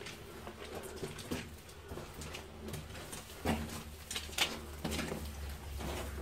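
Footsteps and scuffs of people walking over the rocky floor of a tunnel, with scattered soft knocks and clicks.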